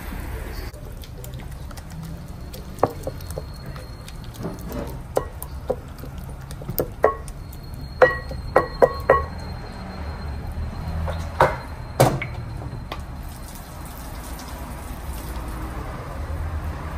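Pestle mashing cooked fava beans for foul in a ceramic bowl: irregular knocks and clinks against the bowl, with a quick run of sharp ringing strikes about eight seconds in and two more around eleven to twelve seconds, over a low background rumble.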